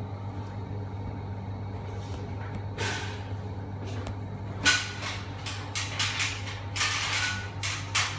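A series of short knocks and rustles as a person moves about and climbs up to reach the ceiling fan, clustering in the second half, over a steady low hum.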